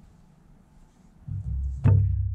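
A hardcover picture book laid down on a wooden picnic table: a low rumble starts about a second in, then one sharp thud near the end.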